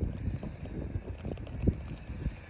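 Wind buffeting the microphone in uneven low gusts, with one stronger thump near the end.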